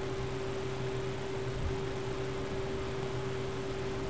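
Room tone: a steady background hiss with a low, unbroken electrical hum.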